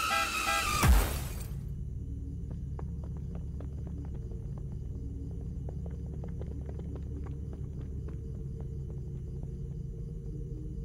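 A loud electronic dance track breaks off in a heavy crash about a second in. A low, steady rumble follows, as inside a car's cabin, with faint scattered ticks over it.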